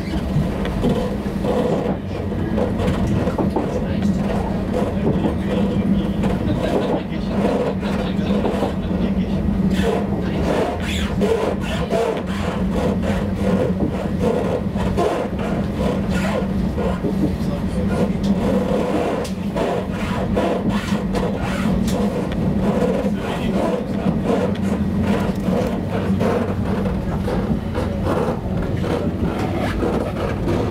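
Steady rumble of rail running noise heard inside a passenger train carriage, while a freight train of container and tank wagons rolls past close alongside.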